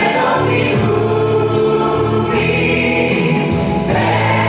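Live pop music from a band, with several voices singing together on long held notes over a steady bass.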